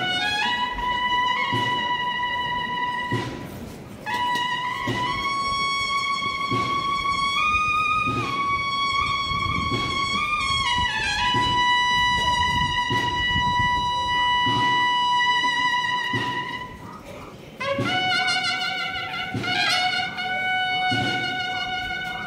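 A cornetas y tambores band plays a processional march. The bugles hold long notes that step up and then down, with brief breaks about three seconds in and near the end, over a regular drum beat.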